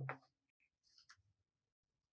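Short rustles and taps of craft paper and a pen being handled on a tabletop: the loudest right at the start, another brief rustle about a second in, then near silence.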